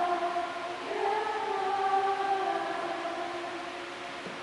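Voices singing a slow hymn in long held notes, fading out near the end.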